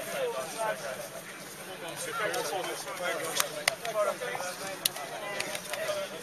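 Chatter and calls of many people mingling at a distance, with no single voice close, and a few sharp clicks in the second half.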